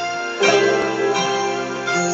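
Electric guitar picked in a ringing chord that is struck about half a second in and rings on, with another strike near the end.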